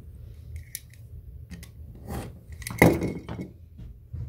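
A utility knife and steel ruler being handled on a cutting mat: small scrapes and clicks, then about three seconds in a metal tool is set down with a clank that rings briefly.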